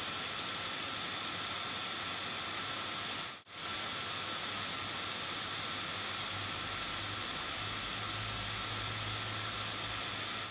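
Steady hiss of recording noise from a webcam-style microphone, with faint thin high whining tones running through it. It drops out for an instant about three and a half seconds in, and a faint low hum rises in the second half.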